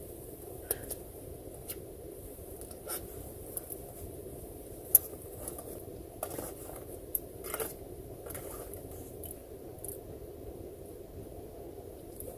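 Cutlery scraping and clicking against a food container during eating, in scattered short strokes over a steady low hum, with one sharp click about five seconds in the loudest.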